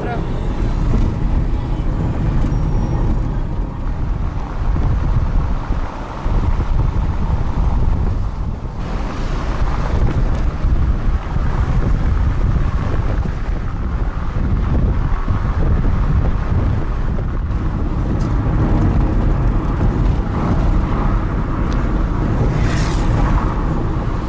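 Car driving, heard from inside the cabin: a steady, loud rumble of engine and tyre noise with some wind.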